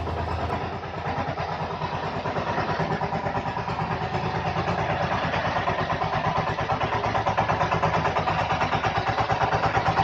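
A two-wheel power tiller's single-cylinder diesel engine running with a steady, rapid chugging beat, growing louder in the second half as the machine comes closer.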